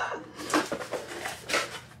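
Cardboard shipping box being opened by hand, its flaps and contents rustling and scraping in a run of crackly noises.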